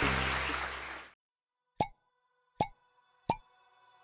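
Audience applause that cuts off abruptly about a second in, followed by three short ringing plop sound effects, evenly spaced, one for each line of an on-screen title card.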